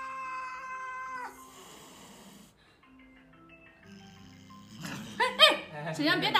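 A cat yowling near the end, a wavering cry that rises and falls in pitch, over faint xylophone-like background music. It opens on a held musical note that cuts off about a second in.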